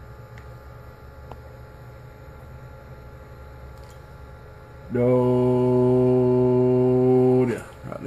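A loud, steady, low-pitched hum with a buzzy edge, starting abruptly about five seconds in and cutting off about two and a half seconds later, over a faint background hum.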